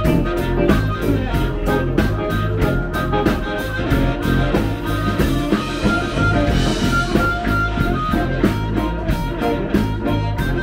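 Live blues band playing: an amplified harmonica leads over electric guitar, bass and drums keeping a steady beat, with one harmonica note held longer about midway.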